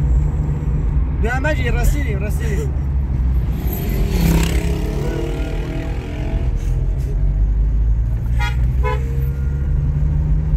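Steady low engine and road rumble heard inside a moving car's cabin. A short stretch of voice comes about a second in, and two brief higher-pitched pulsing sounds come near the end.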